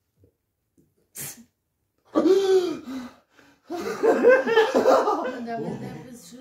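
Wordless vocal reactions to a labour-pain simulator's contraction at its peak: a sharp sniff-like breath about a second in, then a drawn-out groaning "oh" and laughing.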